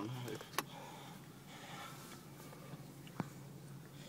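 Quiet car cabin with a steady low hum, a faint rustle and two small clicks, the sharper one about three seconds in.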